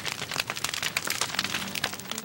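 Crackling fire sound effect: a dense run of sharp crackles and pops, with a faint musical note coming in near the end.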